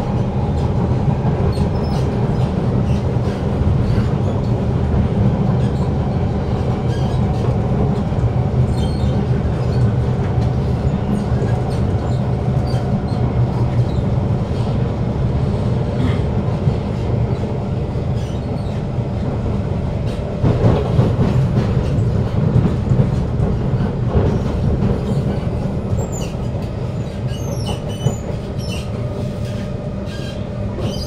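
Interior of a Kawasaki Heavy Industries C151 metro car with GTO-VVVF traction running at speed: a steady low rumble and hum from the traction motors and wheels. Scattered clicks of the wheels on the rails run through it, and thin high wheel squeals flicker in the last few seconds.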